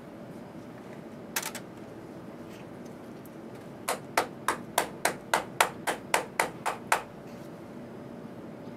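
Plastic test-well holder rapped upside down onto a paper towel on the bench, about a dozen sharp knocks at roughly four a second, to knock leftover wash liquid and bubbles out of the wells. A single light click comes earlier.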